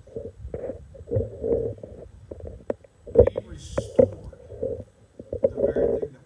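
Indistinct, muffled speech on a handheld microphone, with low rumble and sharp knocks from the microphone being handled.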